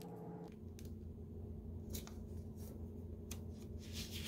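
Faint rustling and crinkling of a sheet of origami paper being folded and creased by hand, a few short scratchy touches over a low steady hum.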